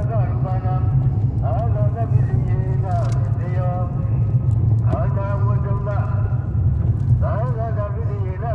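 A man's voice going on without a break over the steady low rumble of a car's engine and tyres, heard from inside the cabin.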